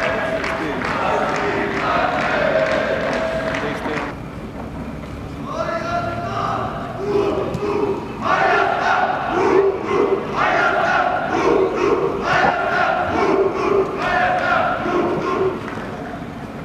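Several men's voices shouting in drawn-out, chant-like calls. The calls are repeated roughly every two seconds, with a brief lull about four seconds in.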